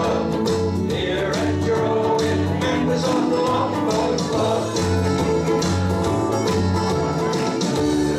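Ukulele band strumming an instrumental passage of an upbeat country-style song, over a steady, repeating bass line.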